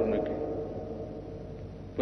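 Pause between a man's chanted preaching phrases: the last held note fades away through echo for about two seconds, over a faint low hum. His voice comes back right at the end.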